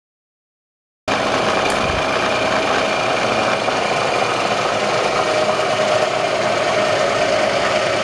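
Bridgeport vertical milling machine running under power, its spindle turning steadily with a steady whine. The sound comes in suddenly about a second in.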